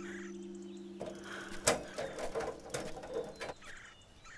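A low held drone fades out about a second in. After that, birds call faintly among scattered light clicks and knocks.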